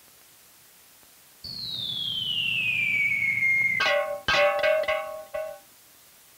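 Cartoon sound effects: a smooth whistle that slides down in pitch over a low buzz, followed by a quick run of twangy plucked notes.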